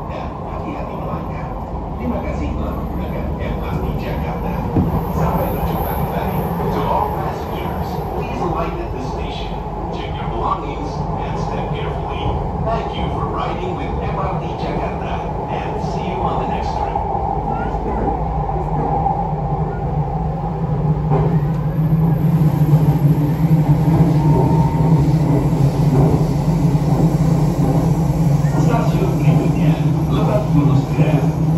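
Jakarta MRT train running on its elevated track, heard from inside the carriage: a steady rumble of wheels on rail with a running hum. A lower hum swells and the whole sound gets louder about two-thirds of the way through.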